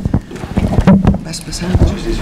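Knocks, rubbing and rumble picked up by a table microphone as it is handled and papers are moved, with a few words and a laugh in between.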